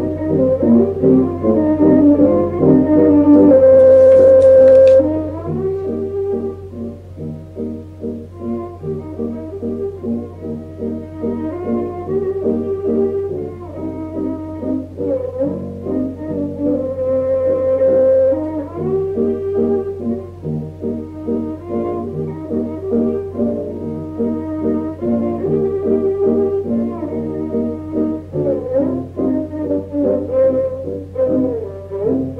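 Recorded klezmer ensemble playing a khosidl. A long, loud held note comes about four seconds in, then the tune settles into an even dance rhythm with many repeated notes over a pulsing accompaniment. A steady low hum runs underneath.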